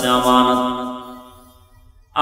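A man's voice chanting the drawn-out end of a sermon phrase on one held note, in the melodic intoning style of a Bengali waz preacher. The note fades away over the first second and a half, leaving a short pause.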